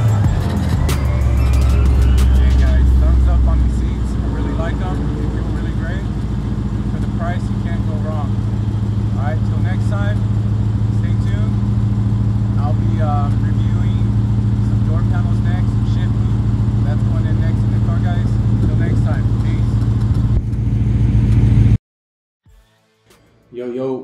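A 2005–2009 Ford Mustang GT's 4.6-litre three-valve V8 slowing as the car pulls up, with its pitch sliding, then settling into a steady idle that cuts off suddenly near the end.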